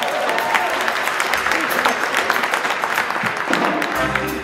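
Audience applauding: a dense patter of handclaps in a large, reverberant hall.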